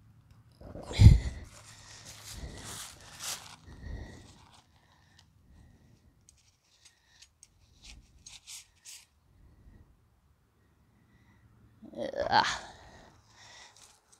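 Rustling and scraping of a tent fly and its pullout cord being pulled and staked down on grass, with a single low thump about a second in. A few faint clicks follow, and another short burst of scuffing comes near the end.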